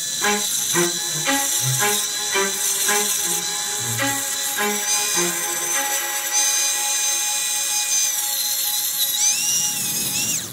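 Background music with a steady beat over the steady high whine of an electric disc sander grinding the edge of a concrete block; the whine shifts in pitch about halfway through and dips just before the end.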